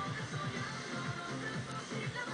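Dance music with a steady beat from an FM radio broadcast, playing through an LG FFH-218 mini hi-fi system.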